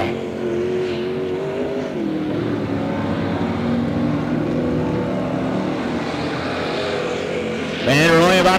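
Engines of several figure-eight race cars running together through the turns. Their notes overlap at different pitches and shift slowly as the drivers lift and get back on the throttle, at a steady level throughout.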